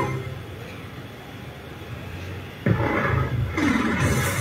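The last held note of a sung advertising jingle dies away, then after a lull a sudden loud, rough noise starts about two and a half seconds in and runs on.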